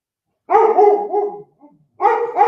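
A dog barking: a run of about four quick barks starting about half a second in, fading by the end.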